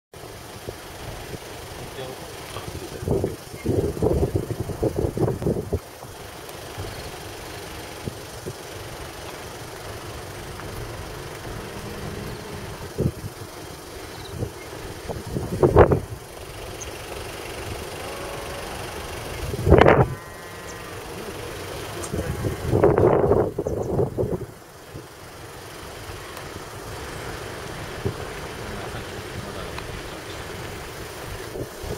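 Steady running noise of a moving vehicle, with short bursts of people's voices a few times.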